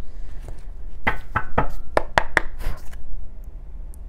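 A deck of tarot cards being shuffled and handled: a quick, irregular run of about eight sharp taps and slaps starting about a second in, over a faint low hum.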